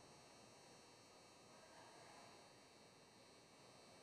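Near silence: faint, steady background hiss.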